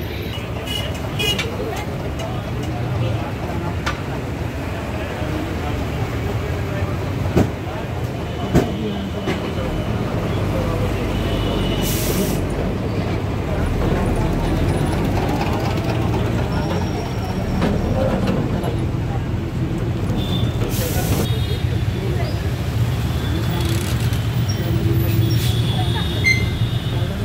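Engine rumble and road noise heard from inside a moving bus in city traffic, with two sharp knocks close together and two short hissing bursts later on.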